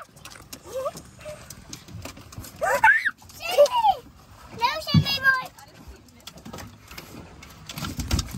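Three short high-pitched squeals that slide up and down in pitch, about three, three and a half and five seconds in, over light clicks and knocks.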